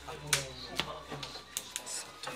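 Several sharp clicks and taps of sleeved playing cards being handled and set down on a playmat, over indistinct voices.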